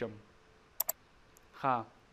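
A computer mouse button clicked twice in quick succession a little under a second in, followed by one faint tick.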